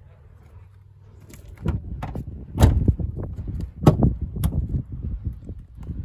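Clicks and knocks of a car's rear door being opened, a run of sharp strokes starting about a second and a half in, the loudest about two and a half and four seconds in.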